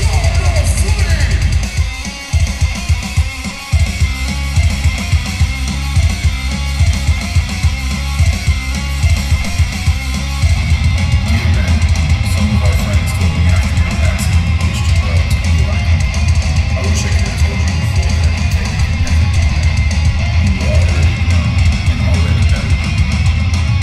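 Live hardcore band playing with distorted guitar, bass and drum kit. About two seconds in come a couple of seconds of stop-start hits, then the full band drives on steadily.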